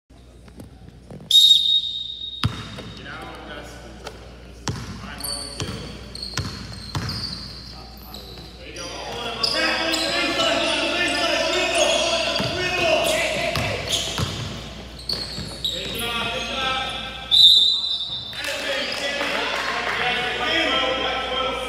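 Basketball bouncing on a hardwood gym floor in a large echoing hall, with two shrill referee's whistle blasts, one about a second in and one near the end, the loudest sounds. Players and spectators call out through the middle.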